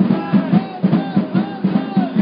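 Drums beating a steady, even rhythm of about three strokes a second.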